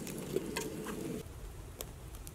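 Food being stirred in a metal camping pot: soft scraping with a few light clicks, cutting off abruptly a little over a second in. A faint low outdoor ambience follows, with one small click near the end.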